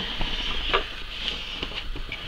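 Rustling and light knocks of a wooden crate full of toiletry bottles and packaging being lifted and handled, with one sharper knock about three-quarters of a second in.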